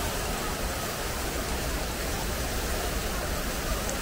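Fountain jets splashing down into a stone basin: a steady rush of falling water.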